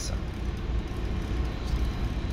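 Steady low background rumble with a faint even hiss above it, with no distinct events.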